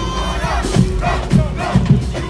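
Marching band drumline playing a cadence, with loud shouting voices over the drum hits.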